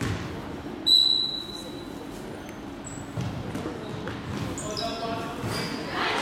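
Basketball game in a gym: a referee's whistle blows once, sharp and high, about a second in, over murmuring voices and a basketball bouncing, with short high sneaker squeaks on the court near the end.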